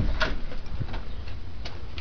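Handheld camera handling noise: a sharp click at the start and a second about a fifth of a second later, then a few lighter clicks over a steady low rumble.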